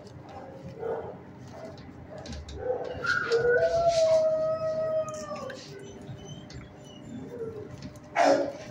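A dog howling: one long call starting about three seconds in and lasting a couple of seconds, its pitch sagging slightly toward the end.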